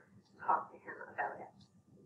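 A woman speaking: a short phrase in the first second and a half, then quieter.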